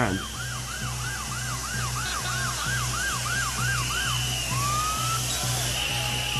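Siren in a fast yelp, swooping up and down about three times a second, which stops about four seconds in and gives way to a single rising tone. A low, pulsing music bed runs underneath.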